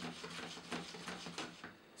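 A utensil stirring and scraping in a skillet of simmering cream sauce: a run of irregular short scrapes and clicks.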